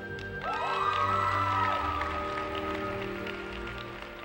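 Skating program music playing, with the audience breaking into applause and a rising whoop about half a second in, greeting a just-landed jump; the applause fades away over the next couple of seconds.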